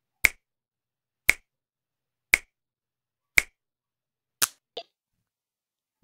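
Finger snaps: five sharp snaps, evenly spaced about one a second.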